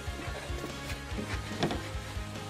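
Background music with held tones over a low, even beat.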